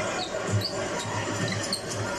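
A basketball dribbled on a hardwood court, a run of low bounces, with short high sneaker squeaks over steady arena crowd noise.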